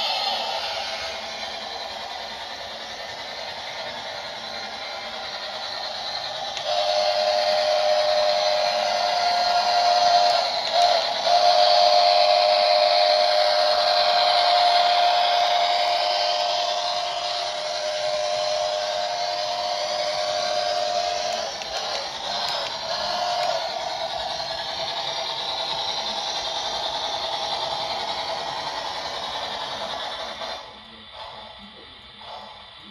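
Double-headed Lionel O-gauge model steam train running past on the layout's track with a steady rolling rumble. From about seven seconds in, a long steady steam-whistle tone from the locomotive sound system is held for about fourteen seconds, broken once briefly near the start, then a couple of short toots follow.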